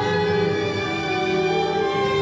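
An orchestra playing, with bowed strings, cellos and double basses among them, holding long sustained notes that change pitch every so often.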